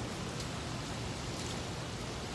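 Steady outdoor background noise: an even hiss over a low rumble, with no distinct events.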